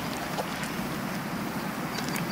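Steady rushing outdoor background noise, with a faint short chirp about half a second in.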